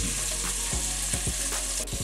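Bacon and sliced button mushrooms sizzling steadily as they fry in a pot, with a few small clicks.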